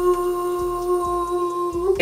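A woman humming one long held note, steady in pitch, with a slight lift just before it stops near the end.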